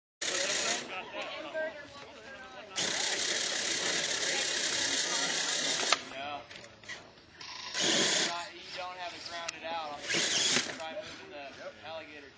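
Radio-controlled Axial SCX10 rock crawler's electric motor and geared drivetrain grinding in bursts as it crawls over rocks. The longest burst runs from about three to six seconds in, with shorter ones later. People talk faintly in the background.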